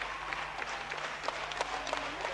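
Concert audience applauding, with many sharp individual hand claps, as the crowd calls the band back for an encore. Recorded from within the audience.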